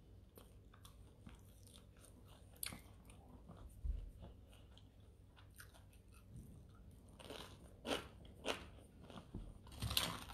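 A person biting and chewing crusty bread close to the microphone: soft, crisp crunches throughout, with a few louder crunches about three and four seconds in and a cluster of them near the end.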